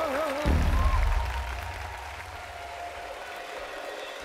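A sung note with a wide vibrato and the band's low backing stop about half a second in. Studio-audience applause follows and slowly fades, over a faint held note from the backing track.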